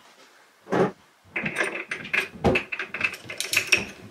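A single knock about a second in, then a rapid run of metallic clicks and clanks from hand tools working on the spindle of a home-built wooden milling machine as the Jacobs drill chuck is taken off.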